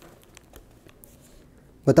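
Quiet pause with a few faint, scattered small clicks, then a man's voice starts near the end.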